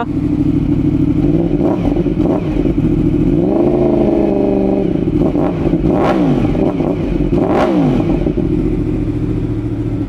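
Yamaha R1 sportbike's crossplane inline-four engine idling, with several throttle blips that rise and fall in pitch, the longest held for about a second a little before the middle. Heard in a garage, as a rev sound check.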